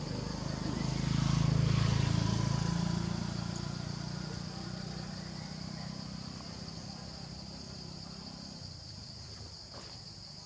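A steady high drone of insects in the forest, with the low hum of a motor vehicle passing, loudest about two seconds in and then slowly fading away.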